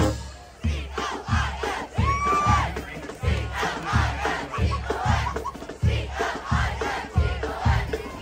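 Marching band drums beating a steady pulse about twice a second, with many voices chanting and shouting over them once the brass has stopped. A short whistle sounds about two seconds in.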